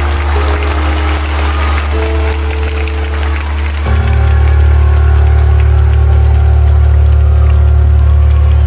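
Live concert music over a stadium sound system: long held chords over a loud, deep bass drone, with no singing. About four seconds in, a new chord comes in and the bass swells louder.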